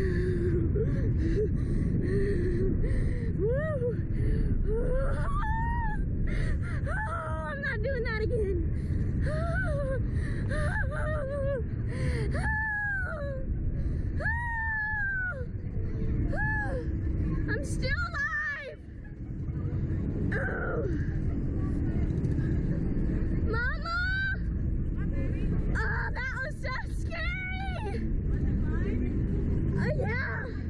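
Two girls moaning, wailing and squealing in fear on a reverse-bungee slingshot ride, with many rising-and-falling cries and a brief lull about two-thirds of the way through. Under them runs a steady low rumble of wind on the microphone.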